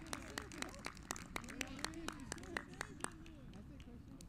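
Distant football players shouting and calling across the pitch, with a regular run of sharp taps, about four a second, that stops about three seconds in.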